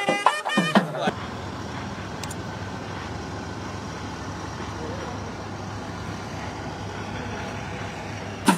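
Music with drums cuts off about a second in. It gives way to a steady engine hum under an even rushing noise: the background of an airport apron around a parked ATR 72 turboprop and its baggage tractor.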